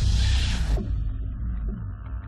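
A deep cinematic boom hit with a hissing swell that fades within about a second, leaving a low rumbling drone underneath.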